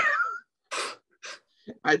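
A man laughing over a video call: one loud, pitched burst of laughter at the start, then a couple of short, breathy laughing exhales.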